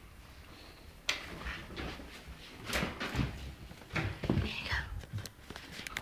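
A person's soft, whispered voice, with rustling and knocks from the phone being handled close to the microphone.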